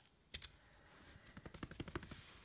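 A sharp click about a third of a second in, then faint, irregular small clicks and rustling that grow toward the end, as hands handle a plastic pom pom maker and a freshly made yarn pom pom.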